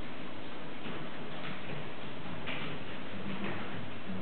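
Steady background hiss with a few faint, irregular clicks of a computer mouse as the Google Earth view is steered.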